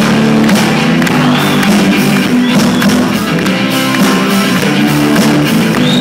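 Live rock band playing loudly on stage, with guitar over a steady drum beat and no clear lead vocal.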